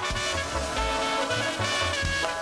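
Live duranguense band playing an instrumental passage: saxophone lines over a steady, evenly repeating low bass beat.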